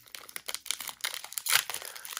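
Shiny plastic wrapper of a 2020-21 Upper Deck Series 2 hockey card pack crinkling and tearing as it is pinched and peeled open by hand. The crackles come thick and irregular, louder about one and a half seconds in.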